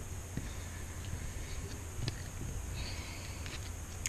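Quiet handling sounds of a clear acrylic stamp being pressed onto a paper journal page, with a couple of small ticks, over a steady low room hum.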